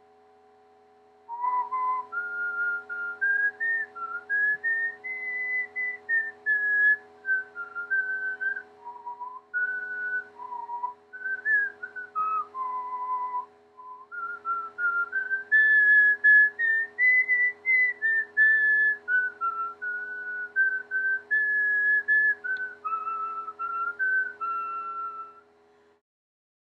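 A person whistling a slow melody, one clear note at a time. It starts about a second in and stops just before the end, over a faint steady hum.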